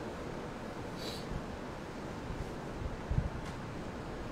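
Steady room hiss with faint rustling of a merino T-shirt being pulled on over the head: a short brushing rustle about a second in, and a soft low thump a little after three seconds.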